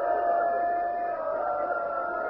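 A gathering of mourners wailing and weeping aloud together, many voices in long, wavering cries that overlap. The recording is an old, muffled tape.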